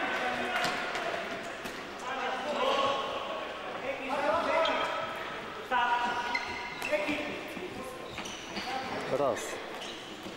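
Players' shouts echoing around an indoor sports hall, with sharp knocks from a futsal ball being kicked and bouncing on the court.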